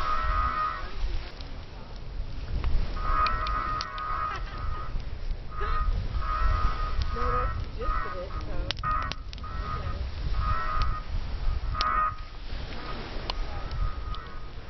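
A series of short honking tones, the first held about a second and the rest shorter and irregularly spaced, over a steady low rumble with scattered sharp crackles.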